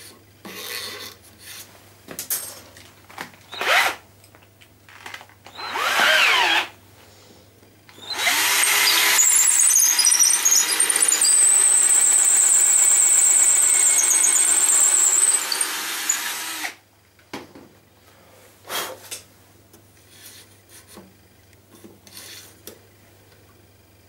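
Electric drill running for about eight seconds, boring a hinge-pin hole through the lid's bored hinge knuckle into the wooden box side, with a steady high whine over the motor. Light handling clicks and knocks come before and after it.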